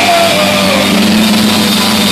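Rock band playing live in a hall, with sustained held notes over a steady low tone and one high note sliding down in the first second.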